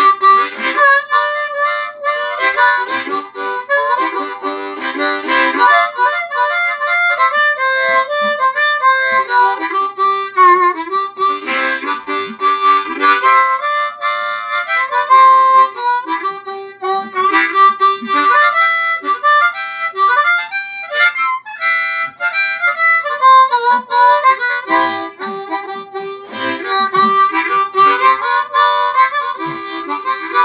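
A harmonica in the key of C playing a blues riff solo, cupped in both hands: a run of short notes in repeating phrases with brief gaps between them.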